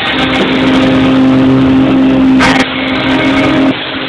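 Live rock band playing loud: a held, distorted chord from guitar and keyboard over drums, with a brief burst of noise about two and a half seconds in.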